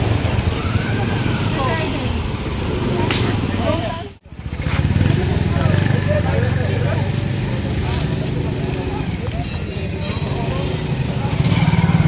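Street ambience: scattered voices of passers-by over a steady low rumble of road traffic. The sound cuts out abruptly for a moment about four seconds in.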